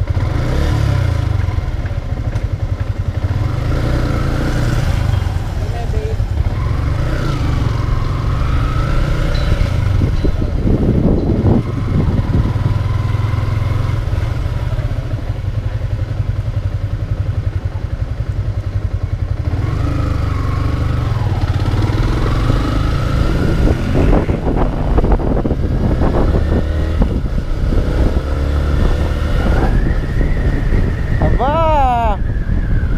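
Yamaha Sniper 150's liquid-cooled 150cc single-cylinder four-stroke engine running under way, rising in pitch as it accelerates twice, with heavy wind rumble on the microphone.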